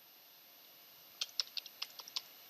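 Computer keyboard keys typed in a quick, faint run of about six keystrokes starting about a second in: a short password being entered.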